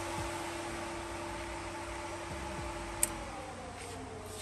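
16-inch electric radiator cooling fan running with a steady hum. About three seconds in a switch clicks off, and the fan's pitch falls as it spins down.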